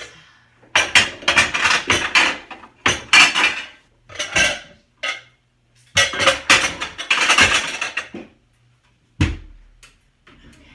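Containers and supplies clattering and rattling in several bursts as they are shuffled onto a cabinet shelf, then a single thump near the end as the cabinet door shuts.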